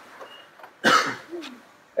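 A single short cough, nearly as loud as the surrounding speech, about a second in, followed by a brief low throat sound.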